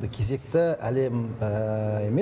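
A man's voice speaking, drawing out one long level-pitched vowel in the second half.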